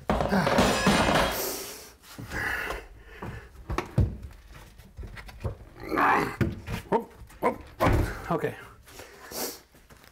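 A Formica-laminated particle-board countertop being worked loose from its base cabinets. It makes a long scraping, grating sound for about the first two seconds, then scattered knocks and thunks.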